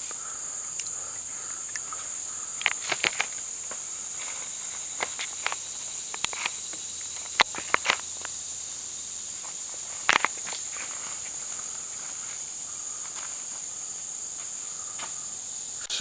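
Steady high-pitched chorus of insects, with a few sharp clicks and rustles close to the microphone, the loudest about seven and ten seconds in.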